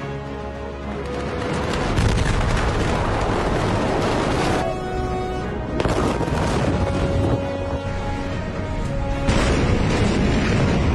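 The Beirut port explosion, caught on phone microphones: a loud, noisy rumble from the 2,750 tonnes of ammonium nitrate that blew up. It starts about two seconds in, breaks off for a moment in the middle, and comes back louder near the end, with music running underneath.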